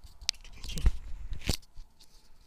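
Hands handling white plastic washbasin-trap pipe pieces: two sharp plastic clicks just over a second apart, with a dull thump and rustling in between.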